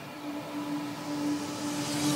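Electronic dance music build-up: a held synth note under a noise sweep that swells and brightens, getting steadily louder.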